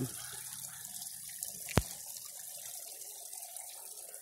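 Small garden-pond waterfall trickling steadily over stacked stone into the pond, with a single sharp click a little under two seconds in.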